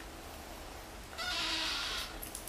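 A kitten mewing: one cry of under a second, starting a little past a second in.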